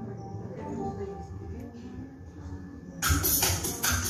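A live band's song starts about three seconds in, with a quick, steady percussion beat and a keyboard bass line coming in together after a few seconds of quiet hall.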